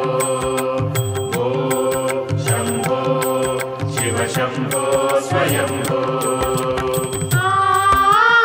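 Devotional Shiva chant sung over music with a steady drone and a regular beat of about two strokes a second. Near the end a gliding melody line comes in.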